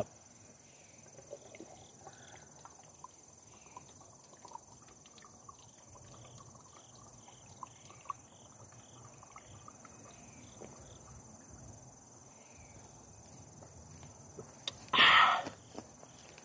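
A person chugging a can of iced tea: faint gulping and swallowing clicks through most of the stretch, then a loud, short gasp of breath about fifteen seconds in as the can is emptied.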